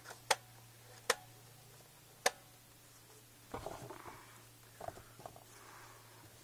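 A plastic Nerf Barricade blaster being loaded with foam darts by hand: three sharp clicks about a second apart, then a few seconds of softer rustling and handling.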